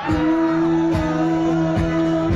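Live band music through a concert sound system, recorded from within the audience: a song starts abruptly at the very beginning with held notes over a drum beat, roughly one hit a second.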